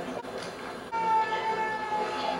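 A long, steady shout, a karate kiai, that starts abruptly about a second in and holds for about a second, falling slightly in pitch.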